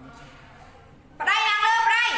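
A woman's high-pitched, drawn-out vocal call starts a little over a second in and holds loudly with a wavering pitch.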